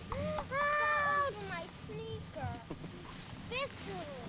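Children's voices calling out and chattering, with one long high call about half a second in, over a low steady hum.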